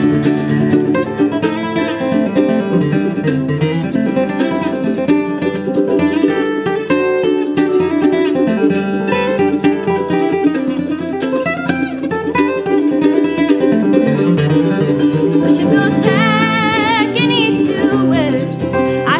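Acoustic guitar and mandolin playing an instrumental break together in a bluegrass-style folk song. A brief wavering high note comes in near the end.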